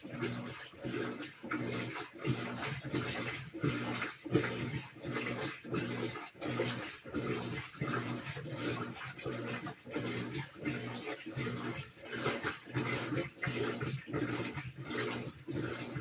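Whirlpool WTW4816 top-load washer in its wash stage, agitating the load: water swishing over a low motor hum, swelling and dipping about one and a half times a second.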